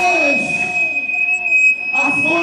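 A break in a live rock band's playing: drums and guitar drop out, leaving a steady high-pitched whine held through, typical of electric guitar amplifier feedback, under a wavering wordless vocal.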